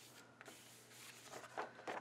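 Faint paper handling: a few light ticks, then a soft rustle of a sticker sheet sliding over a planner page in the second half.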